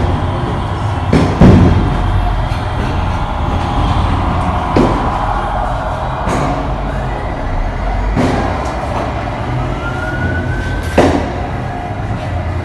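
Several loud, sharp shots spread across the few seconds, the loudest a little over a second in and near the end. They sound over the steady low rumble of heavy street traffic, with a passing tipper truck at the start.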